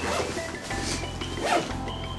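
Zipper on a Speedo nylon swim backpack being pulled open in short strokes, one at the start and another about one and a half seconds in.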